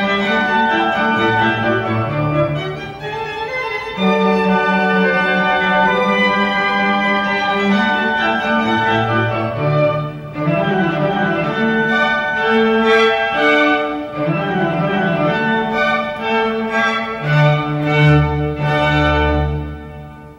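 A small ensemble of violins and cello playing a classical piece in sustained bowed notes, closing on a low final chord at the end.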